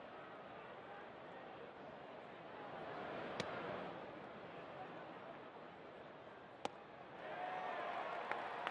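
Ballpark crowd murmur with a sharp leather pop about three and a half seconds in, a pitched baseball smacking into the catcher's mitt, and another sharp crack about six and a half seconds in. The crowd noise swells near the end.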